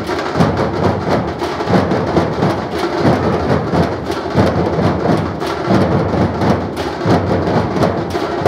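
A large troupe of dhol drummers playing together in a dense, steady beat, the many strokes blurring into a continuous rumble.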